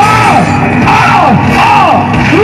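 Loud shouting and yelling from several voices over music, the calls swooping up and down in pitch about twice a second.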